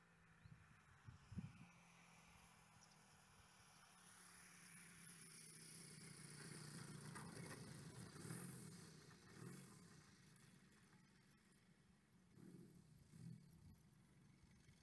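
Faint, distant running of the DA100 gas engine of a large RC aerobatic plane at low throttle as it lands, swelling slightly as the plane rolls nearest and then fading, over near silence. A soft thump about a second and a half in.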